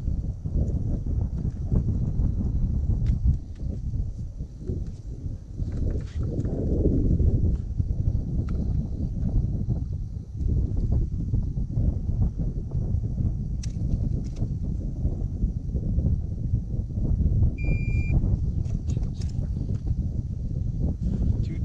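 Wind buffeting the camera microphone: a steady low rumble with scattered small knocks. A short, high electronic beep sounds near the end.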